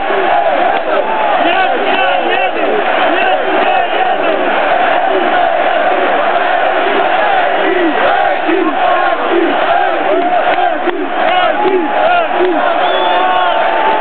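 Large football stadium crowd shouting and chanting, many voices together at a loud, steady level. A long held note sounds over it near the end.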